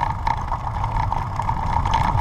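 Steady riding noise from a vehicle moving along a rough forest dirt track: a continuous low rumble from tyres on the ground and wind on the microphone, under a steady high whine.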